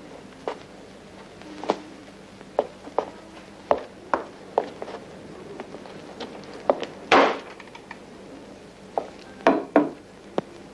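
Irregular sharp knocks and thumps of footsteps and a wooden door, with a louder clattering noise about seven seconds in and a quick cluster of knocks near the end. A faint steady hum runs underneath from the old film soundtrack.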